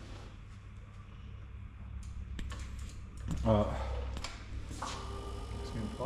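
A few light clicks from a motorcycle's handlebar controls being handled, over a steady low hum.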